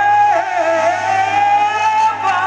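Live soul ballad: a singer holds long high notes that dip and climb back, with the band underneath and a steady low hum.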